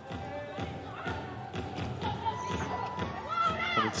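Arena music playing through a hall's sound system during a 3x3 basketball game, with a basketball being dribbled on the court.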